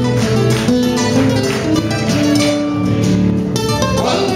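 Three acoustic guitars playing a cueca live, with rhythmic strummed chords under a moving melody line.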